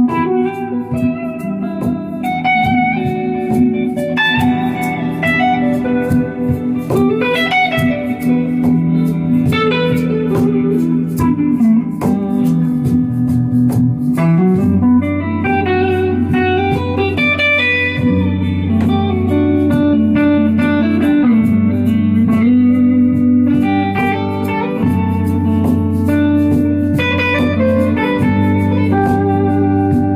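Live instrumental music: a Paul Reed Smith McCarty electric guitar plays a bluesy lead with bent, gliding notes over a sustained lower accompaniment. A deeper bass line comes in about halfway through.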